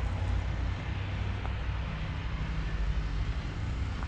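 A steady low engine hum with a noisy rush over it, even throughout.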